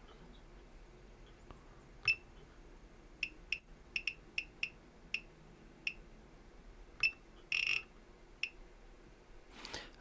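Short electronic key-press beeps from the Riden RD6018 bench power supply's buzzer as its buttons are pressed to enter a 14.6 V setting. About a dozen quick beeps at an uneven pace, with one longer beep about seven and a half seconds in.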